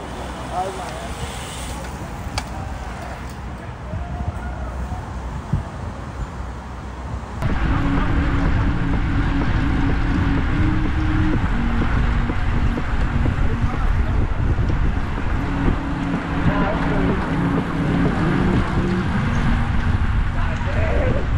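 Cyclists riding past in a group with faint voices. About seven seconds in, a sudden change to a much louder ride-along sound: wind buffeting the microphone and road noise from a fixed-gear bike rolling in the middle of the pack.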